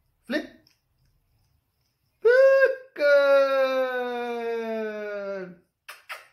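A short vocal sound, then a brief call, then one long drawn-out voiced note lasting about two and a half seconds that falls slowly in pitch.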